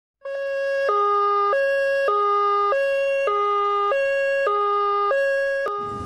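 Two-tone emergency siren, the French 'pin-pon' of an ambulance or fire engine, alternating evenly between a higher and a lower note about every 0.6 s. It cuts off with a click near the end.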